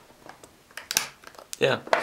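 A few light clicks and knocks of a small plastic storage box being handled and turned on a wooden desk, followed by a spoken "yeah".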